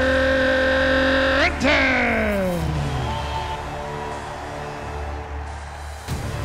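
Arena public-address announcer drawing out the player's surname in one long held note, which swoops up and then falls away over about three seconds, ringing in the arena's echo. Fainter music and room hum carry on after it.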